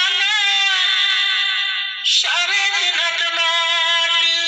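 A Bengali song: a singer holding long, wavering notes over the accompaniment. The voice breaks off briefly about halfway through and comes back in.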